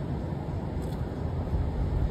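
A car driving along, with a steady low rumble of road and engine noise from inside the vehicle.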